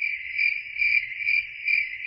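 Cricket chirping sound effect: a steady high trill pulsing about four times a second, the stock 'crickets' gag for an awkward silence, here marking that the opposition media gave no response at all.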